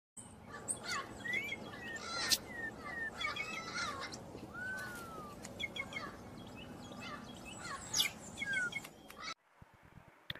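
Songbirds chirping and whistling: several quick chirps and trills, with one longer slurred whistle in the middle, over a steady outdoor hiss. The birdsong cuts off suddenly shortly before the end.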